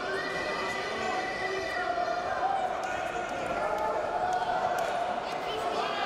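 Many indistinct voices talking and calling out at once in a large sports hall, with a few faint knocks.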